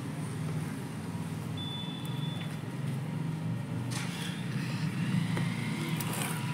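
Soft scuffing and rustling of fingers pressing down loose potting soil around a transplanted vinca cutting in a plastic pot, over a steady low background rumble.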